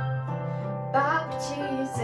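Instrumental introduction of a Christmas carol backing track: a sustained low bass note under held chords, with a short wavering melody line about a second in.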